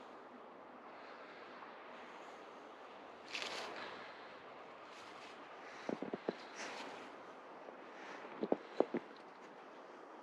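Faint snow rustling and crunching as a dog noses and burrows into a hole in the snow, over a low steady hiss. There is a brief rustle about three seconds in, then two quick clusters of sharp crunches, around six seconds and again near nine seconds.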